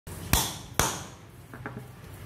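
Two sharp strikes about half a second apart, each with a brief ring: a hammer driving a steel hollow hole punch through paper into a wooden block. A few lighter taps follow later.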